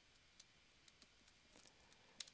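Near silence with a few faint, scattered clicks at a computer.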